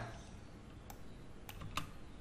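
A few faint, sharp clicks from a computer being worked, one about a second in and two close together near the end, over low hiss.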